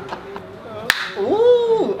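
A sharp slap of one hand striking another, about a second in, followed by a drawn-out vocal "ooh" that rises, holds and falls.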